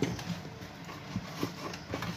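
A wooden spoon stirring thick soup in a stainless steel pot, knocking irregularly against the pot's sides and bottom.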